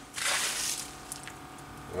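Plastic bucket handled as it is picked up: a brief rustling scrape lasting under a second.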